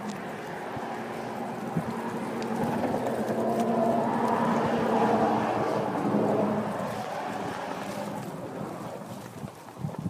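A long, steady pitched tone with overtones that swells to its loudest midway and fades out after about seven seconds, over wind on the microphone.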